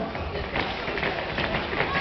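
Ice skate blades scraping and clicking irregularly on a synthetic plastic rink, over background chatter of voices.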